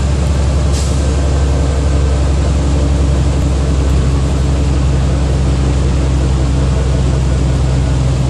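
City transit bus heard from inside the cabin while under way: a steady low engine and drivetrain drone with road noise, and a brief hiss about a second in.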